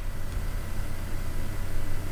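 Steady low background hum with a faint even hiss: room noise.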